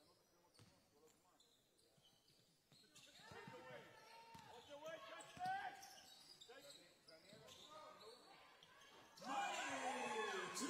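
Basketball dribbling on a hardwood court in an echoing hall, with players calling out. Crowd and player voices grow louder about nine seconds in.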